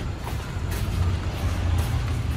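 A low, steady rumble like a running engine.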